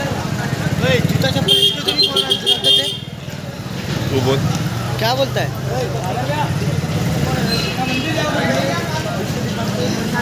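A motorcycle horn beeping in a quick series of short blasts from about a second and a half in, over motorcycle engines running at low speed and crowd chatter.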